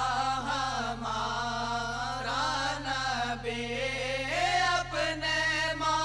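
Naat, an Urdu devotional song in praise of the Prophet, sung in long, ornamented held notes that bend up and down in pitch. A faint steady hum sits underneath.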